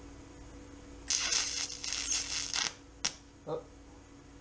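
TIG welding arc on a thin aluminum tab, crackling and sputtering for about a second and a half before it cuts off, followed a moment later by one sharp snap, over a steady electrical hum from the welder. The arc melts the end of the aluminum, which runs much quicker than steel.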